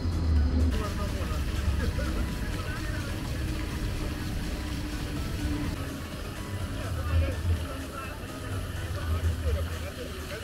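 Outdoor city ambience: people talking in the background over a steady low rumble of traffic, with a light hiss of spraying water.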